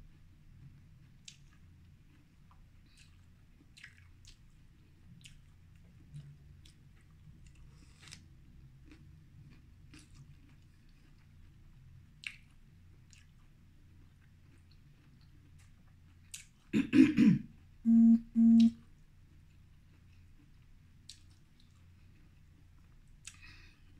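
Close-miked eating sounds: faint wet chewing and mouth clicks while eating seafood boil by hand. About 17 s in a throat clear, then two short hummed sounds.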